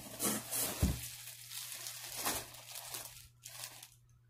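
Packaging crinkling and rustling while balls of yarn are handled, with a dull thump about a second in.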